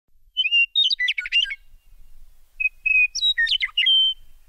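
A songbird singing two short phrases of clear whistled notes running into quick warbling runs, with a pause of about a second between them.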